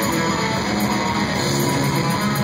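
A blackened death metal band playing live, with heavily distorted electric guitars and drums in a dense, unbroken wall of sound, heard from the crowd.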